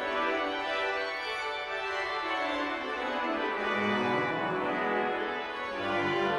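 The Methuen Great Organ, a large concert pipe organ, being played: full sustained chords at a steady level, with a lower voice stepping downward through the middle and new bass notes entering around four seconds in.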